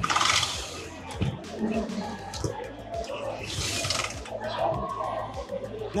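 Background music and people talking in the background, with two brief bursts of noise: one right at the start and one about three and a half seconds in.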